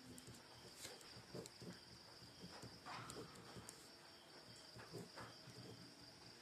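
Near silence: a faint, steady high-pitched chirring of crickets, with faint scratches of a pen writing on paper.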